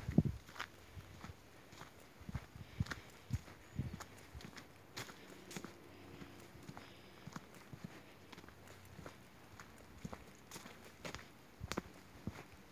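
Quiet footsteps on a dirt footpath: an irregular run of light ticks and scuffs as someone walks along.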